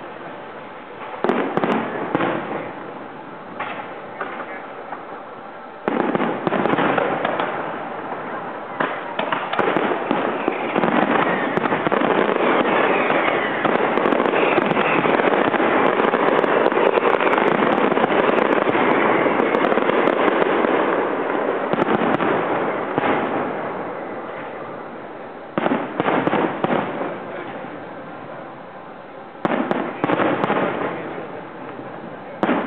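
Aerial fireworks bursting: sharp bangs about a second in and again at six seconds, then a dense, continuous run of bangs and crackling from about nine seconds that fades away after about twenty-two seconds, and a few more bangs near the end.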